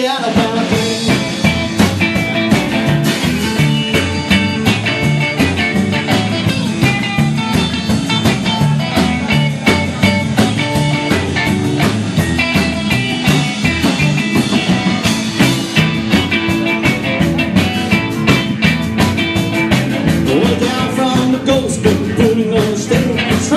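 Live rock and roll band playing an instrumental break: electric guitar lines over plucked double bass walking through the low notes and a steady drum beat.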